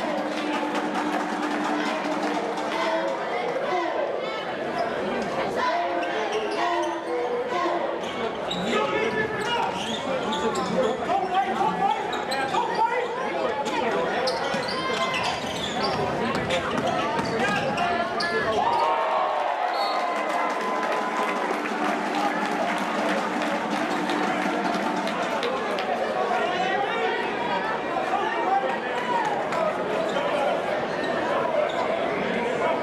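Spectators' voices and chatter filling a gymnasium during a basketball game, with a basketball bouncing on the hardwood court.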